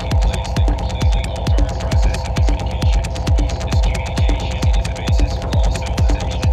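Techno track in a DJ mix: a steady four-on-the-floor kick drum at about two beats a second, each kick dropping in pitch, with fast hi-hat ticks over a constant droning hum.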